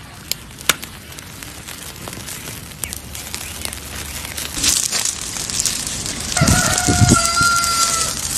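Wood fire crackling and popping under a grill. About six and a half seconds in, a rooster crows, ending on a long held note.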